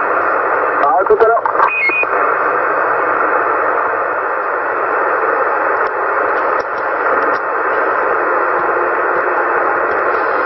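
Steady static hiss from a CB radio's speaker while the channel is open, narrow and radio-like in tone, with a faint voice and a short beep about two seconds in.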